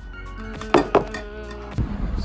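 Background music: a pop song with sustained notes, with a couple of short sharp clicks a little under a second in.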